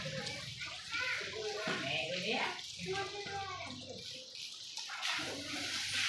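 A hose jet spraying water over an elephant's back and splashing onto wet concrete: a steady hiss under people's voices talking.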